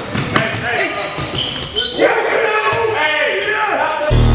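Live sound of a pickup basketball game on a hardwood gym floor: a basketball bouncing in a few sharp thuds, sneakers squeaking, and players calling out, all echoing in the large hall.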